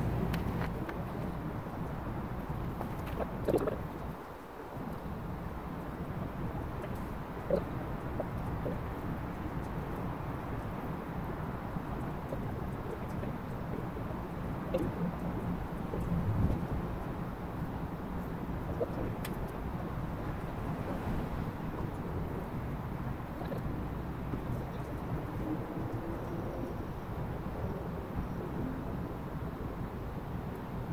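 Steady low outdoor background rumble with no speech, broken by a few soft knocks and scuffs, the first a few seconds in as someone settles onto dirt ground.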